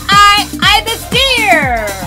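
Children's phonics song over an electronic dance beat: a high-pitched voice sings a vowel sound in quick repeated syllables, then one long note that falls in pitch.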